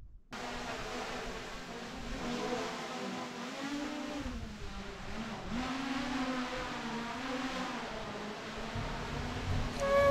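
Small camera drone's propellers buzzing steadily, the pitch wavering up and down as it flies.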